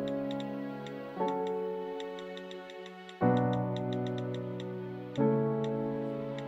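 Soft sustained music chords, each held about two seconds before the next begins. Over them come quick, irregular clicks from a smartphone's on-screen keyboard as a text message is typed.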